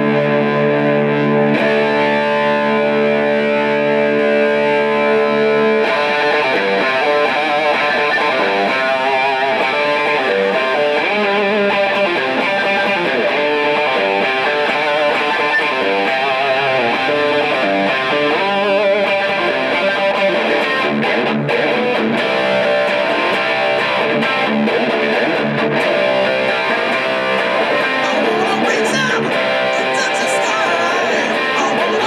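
Overdriven electric guitar, a 1959 Gibson Les Paul played through a small 15-watt amp. A chord rings out for about six seconds, then it breaks into fast rock riffing with bent and wavering notes.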